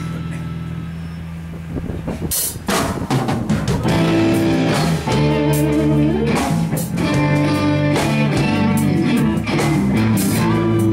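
Live rock band with electric guitars, keyboard and drum kit. A held chord fades for about two seconds, then a drum hit brings the full band back in at full volume.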